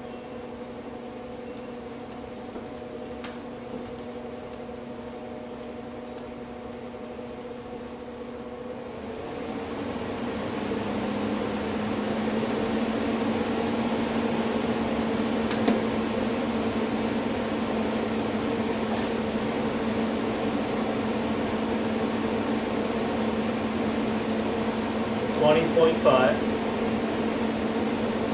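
Blower door fan running steadily, then speeding up about nine seconds in, growing louder over a few seconds and settling into a steady whooshing hum as it depressurizes the house for a multi-point air-leakage test, with flow ring B fitted.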